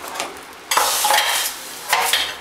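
Steel spoon stirring thick rice kanji in an aluminium pressure-cooker pan, scraping the metal in uneven strokes that are loudest from just under a second in and again near the end. Sizzling from a hot oil spice tempering just poured into the porridge sounds underneath.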